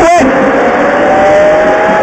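Rally car engine heard from inside the cabin, pulling under acceleration with its note rising steadily. A co-driver's pace-note call ends just after the start.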